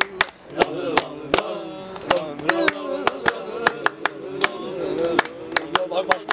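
A man's voice singing over hand claps that keep a steady beat, about three sharp claps a second, with other men clapping along.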